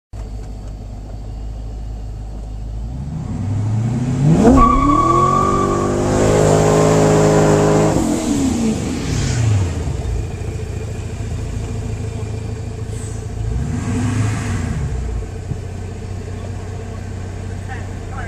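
Supercharged C5 Corvette V8 heard from inside the car: idling, then revving up and launching about four seconds in, with a brief high squeal at the launch. It pulls hard at high revs for a few seconds, then eases off and falls back to a drone, with a shorter rise in revs later.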